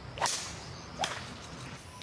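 Two golf swings, each a quick swish and sharp strike of the club head on the ball, the first and louder one about a quarter-second in and the second about a second in, over faint outdoor background noise.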